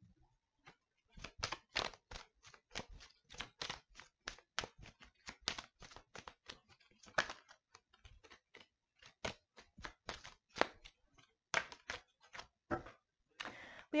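Deck of tarot cards being shuffled by hand: a quick, irregular run of soft card clicks and slaps, starting about a second in and stopping just before the end.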